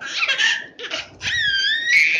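Toddler laughing: a breathy burst of laughter, a short break, then a high-pitched squealing laugh.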